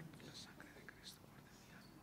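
Near silence: quiet room tone of a small chapel, with a few faint, brief hissing wisps.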